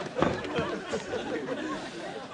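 Indistinct voices chattering, with no clear words, and a short knock about a quarter second in.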